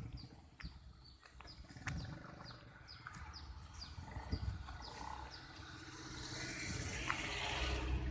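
A minivan drives past on a narrow lane, its engine and tyre noise swelling to the loudest point near the end. Earlier, high short falling chirps repeat about twice a second, over low wind rumble on the microphone.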